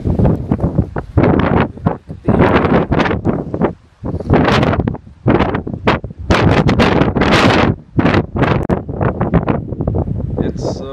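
Strong, gusty wind buffeting the microphone in loud, irregular blasts, with short lulls between gusts, the deepest about four seconds in.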